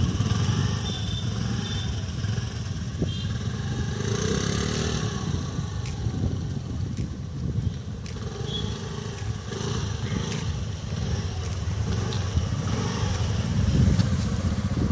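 Motor scooter's small engine running steadily as it is ridden along a path.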